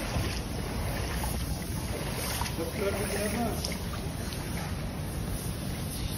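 Seawater flood water sloshing on a building floor over a steady low rumble, with a faint voice about halfway through.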